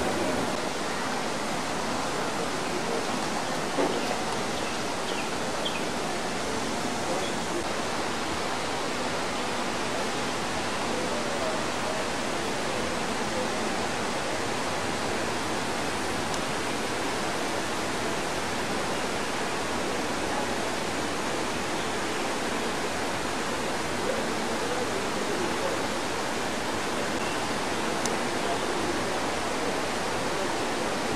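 A steady, even rushing noise, like running or falling water, with no rhythm or change, and faint voices in the background.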